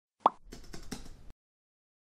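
Intro sound effect: a single sharp pop, then a quick run of keyboard-typing clicks lasting under a second.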